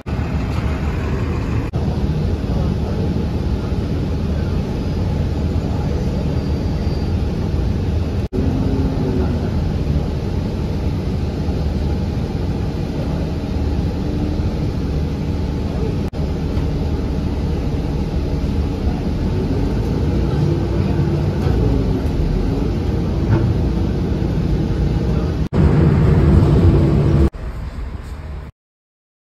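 City transit buses running and pulling away past a covered platform, a steady low engine drone with engine pitch rising and falling as they accelerate. The sound changes abruptly several times, one pass after another.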